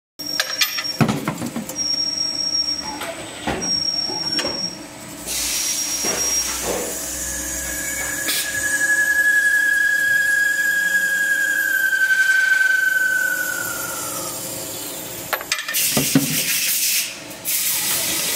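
Automatic pipe-cutting machine working through a cut on a metal pipe nipple: clunks and clicks of the feed and clamping, then a steady high squeal from the cutting tool for about seven seconds that drops in pitch as it finishes, followed by more clunks.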